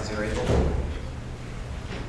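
A brief bit of a man's voice, then a single low thump about half a second in, like something set down or bumped near the microphone; a steady low hum fills the rest.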